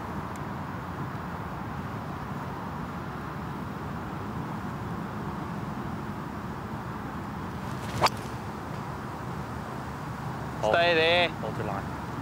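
A golf club striking the ball on a full shot from the fairway: one sharp crack about eight seconds in, over a steady outdoor background hiss. Near the end a man calls out a drawn-out "stay there" after the ball.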